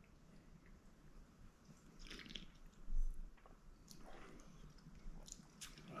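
Faint mouth noises of sipping neat spirit from a tasting glass: a few short slurps and lip smacks, the clearest about three seconds in.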